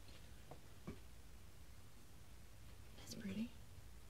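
Quiet room with a faint low hum, two soft clicks in the first second, and a brief murmured word about three seconds in.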